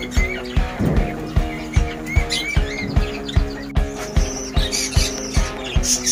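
Background music with a steady beat, with short high bird chirps sounding over it.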